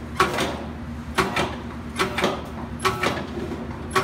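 Sheet-metal chase cap knocking and clanking as it is handled and worked at the collar seam: about six sharp, uneven knocks, each ringing briefly.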